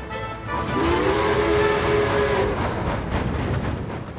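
A steam express train rushing past with a rumbling rush of coaches and wheels. A deep two-note whistle is held for about two seconds early in the pass. Background music plays underneath.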